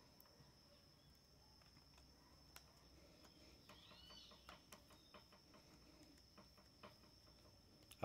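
Near silence, with faint small clicks from a screwdriver turning a screw into an angle grinder's plastic housing. The clicks come in a quick irregular run through the middle, with one faint short chirp about four seconds in.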